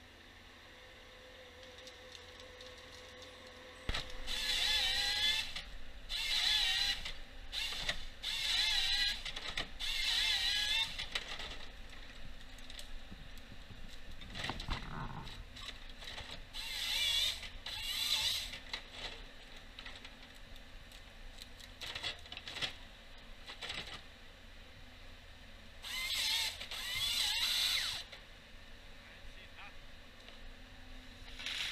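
Timberjack 1470D forestry harvester at work: a low engine hum with repeated whining bursts of a second or two, wavering in pitch, as the hydraulic crane and harvester head are worked.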